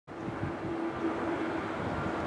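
Steady outdoor noise with a faint continuous hum and low rumble, like distant traffic or wind on the microphone.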